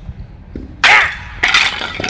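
A stack of tiles smashed by a stick strike: a sudden loud crash of breaking tiles about a second in, then a second crash about half a second later.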